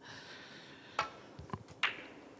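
Snooker break-off shot: the cue tip strikes the cue ball about a second in, and a sharper, louder click comes near the end as the cue ball hits the pack of reds. A fainter tap falls between them, over a low background hush.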